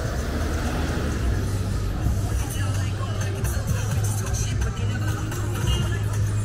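Busy street ambience: music playing, people's voices in the background and the low rumble of traffic, all blended into a steady mix.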